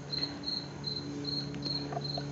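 An insect chirping steadily: short, high chirps at one pitch, about three a second, over a faint low steady hum.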